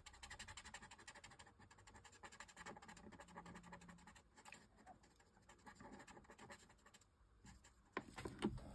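Faint, rapid scratching of a ProMarker alcohol marker's nib stroked back and forth over printed paper, colouring in a small area with dark grey. The strokes thin out near the end.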